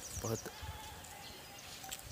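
Faint outdoor ambience: a quick run of very high chirps, then a faint, drawn-out, steady call lasting over a second.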